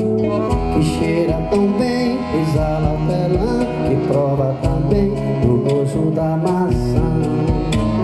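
Live acoustic band playing an instrumental passage: accordion melody over a strummed acoustic guitar, with hand strokes on a cajón keeping the beat.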